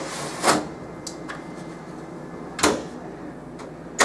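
Jam-access section of a Kyocera TASKalfa copier being pushed back into the machine and closed: two clunks, one about half a second in and a louder one a little past two and a half seconds.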